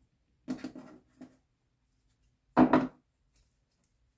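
Tarot cards being handled on a table: a few short knocks and rustles, the loudest near three seconds in, as a card is drawn from the deck.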